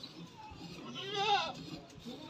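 A single quavering bleat from a farm animal about a second in, lasting about half a second.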